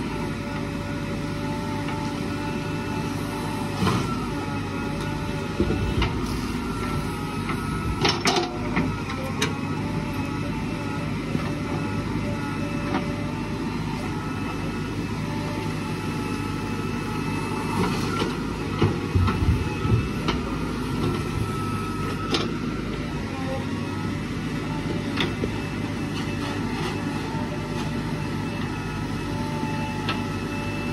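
JCB 3DX backhoe loader's diesel engine running steadily under working load, with a steady whine above the engine note. Sharp knocks and clatter of the bucket and of soil and stones come at intervals, thickest about two-thirds of the way through, as earth is dug and dumped into a steel truck body.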